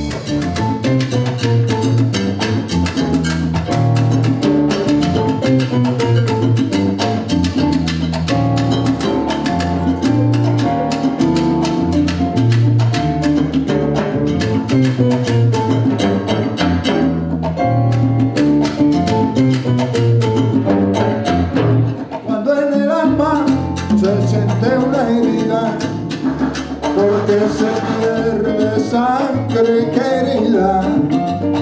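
Live salsa band starts playing all at once: timbales and congas drive a dense rhythm over an electric bass line and keyboard. A woman's singing comes in about two-thirds of the way through.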